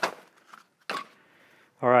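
Survival gear being set down and handled: a sharp knock at the start, a faint tap, then another sharp click just under a second in.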